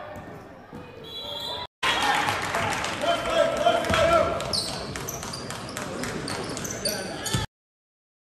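Basketball game play in a gym: a ball bouncing on the hardwood court and sneakers squeaking, over the voices of players and spectators. The sound drops out briefly about two seconds in and cuts off abruptly near the end.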